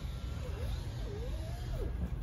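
Steady low outdoor rumble, with faint wavering tones that glide up and down.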